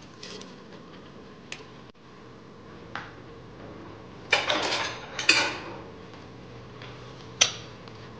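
Spatula working soaked rice and green peas in the stainless steel inner pot of an electric pressure cooker: a few light clicks, then two short scraping rustles about four and five seconds in, and a sharp click near the end.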